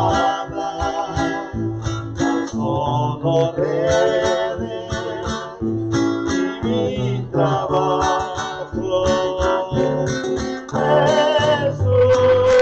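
A man singing with vibrato to his own strummed acoustic guitar.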